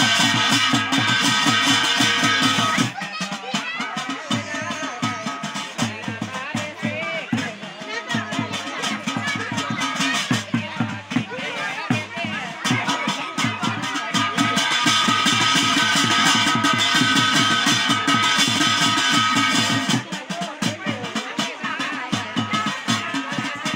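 Garhwali jagar ritual music: a man singing over steady rhythmic drumming. A bright sustained ringing tone rides over the beat at the start and again through much of the second half, with the voice carrying the middle stretch.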